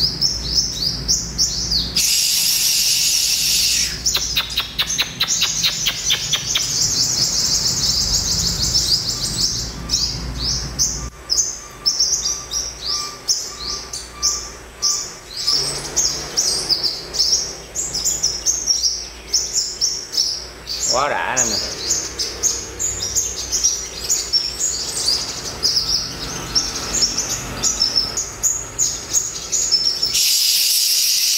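Sunbirds chirping and twittering, a fast, continuous stream of short high-pitched notes, densest about two to four seconds in.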